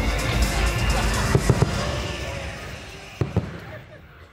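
Fireworks bangs over music and voices: a cluster of three sharp bangs about a second and a half in and two more just past three seconds, the whole fading away toward the end.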